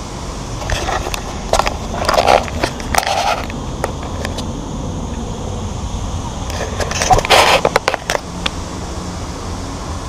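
Plastic bag and food packaging crinkling and rustling as they are handled, in two spells of a few seconds each, over a steady low hum.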